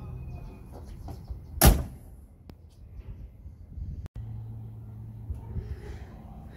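A 1967 Chevelle's car door being shut: one loud slam with a short ring about a second and a half in, between quieter handling noises.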